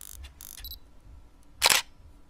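Camera sound effect: a few soft mechanical clicks, then one loud, sharp shutter click about one and a half seconds in.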